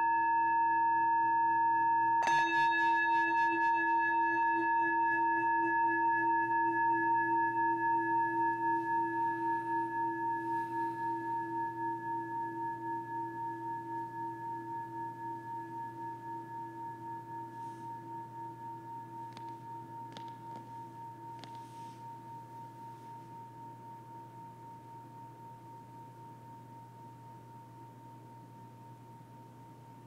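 Small metal singing bowl ringing after being played with a wooden stick: a held tone with several overtones and a light knock about two seconds in, then the ring slowly fades, wavering as it dies away.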